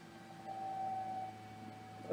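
A faint steady tone lasting about a second, over a low steady background hum.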